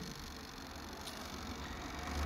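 Quiet room tone with a faint low steady hum and no distinct event.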